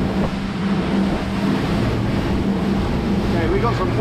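Twin Mercury Verado 350 outboard engines running steadily at cruising speed, about 26 knots, a constant drone under the rush of wind and water past the open boat. A voice starts to speak near the end.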